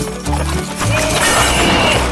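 Horse whinny and hoofbeat sound effect, standing in for the sleigh's reindeer, over background music with a steady bass line. The noisy burst swells about half a second in and is loudest near the end.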